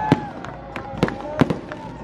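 Aerial fireworks going off: a quick string of sharp bangs, about six in two seconds, with voices underneath.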